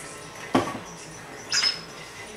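Plastic blender lid being fitted onto a blender jar: a sharp knock about half a second in, then a short, high squeak about a second later.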